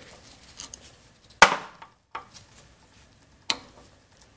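Screwdriver clicking and knocking against the screws and plastic mounting frame of a CRT projection tube: small ticks, then one sharp loud click about a second and a half in and another near the end.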